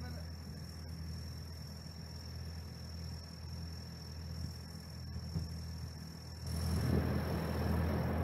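John Deere tractor engine running steadily at a low hum, growing louder and rougher about six and a half seconds in.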